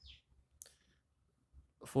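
A single short, faint click about half a second in, amid quiet. A man's voice starts right at the end.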